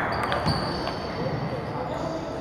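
Table tennis balls clicking off bats and tables in short, scattered hits, the sharpest about half a second in, from several matches going on at once in a large hall, over a murmur of background voices.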